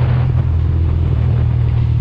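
Motorcycle engine running at a steady cruising speed, heard as an even low drone, with a rush of wind and road noise over it.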